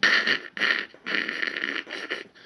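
A man imitating with his mouth the hissy, crackly background noise of a noisy phono preamp stage: a rough "shhh" in a couple of short bursts, then a longer one. The noise he mimics comes from inferior wire-wound resistors in the collector circuit of the phono stage's first transistor.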